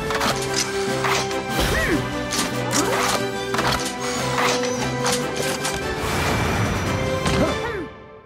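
Cartoon robot-transformation sound effects: a run of sharp mechanical clanks and quick swishing glides over upbeat background music.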